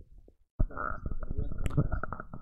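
Microphone handling noise: a sudden low rumble with knocks and rubbing begins about half a second in, with muffled speech under it.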